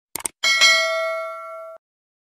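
Subscribe-button sound effect: two quick mouse clicks, then a notification bell ding struck twice in quick succession, ringing out for about a second before cutting off sharply.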